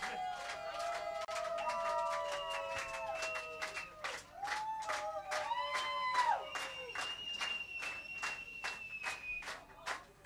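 Concert audience clapping in unison, about two to three claps a second, with shouts and whistles over the clapping: a crowd calling for an encore.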